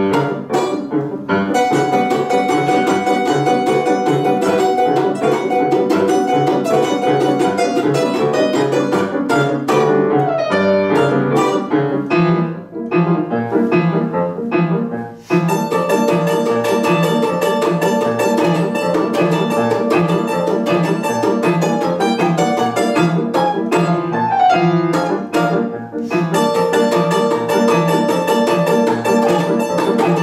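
Balalaika played with rapid strumming over a grand piano accompaniment, a lively duet. The music drops quieter for a couple of seconds about halfway through, then both come back in at full strength.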